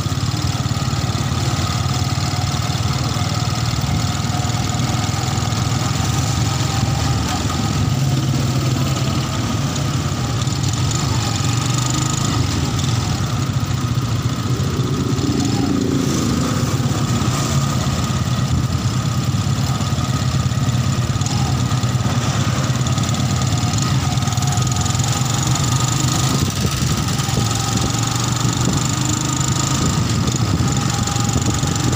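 Engine of a small road vehicle running steadily while driving along a paved road, a constant low hum with road and wind noise over it.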